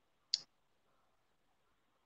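Near silence, broken once by a single brief click about a third of a second in.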